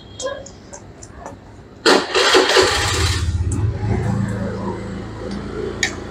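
A motorbike engine starts with a loud burst about two seconds in, then runs with a low steady hum that slowly fades. A metal spoon clinks on a china plate near the end.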